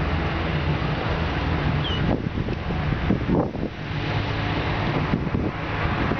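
Wind blowing across the camera microphone: a steady rushing noise with a low rumble.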